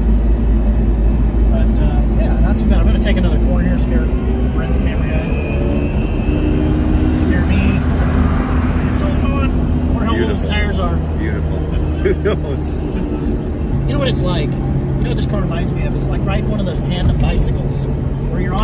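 A man talking inside the cabin of a moving electric-converted Fiat X1/9, over steady road and wind rumble. A steady low hum runs under it and drops to a lower pitch about three-quarters of the way through.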